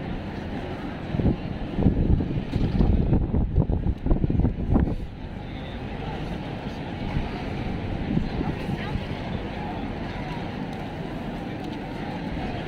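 Crowd of pedestrians talking and walking all around, a steady street hubbub of many voices. From about a second in to about five seconds in, loud low rumbling gusts rise over it, then the hubbub settles back to an even level.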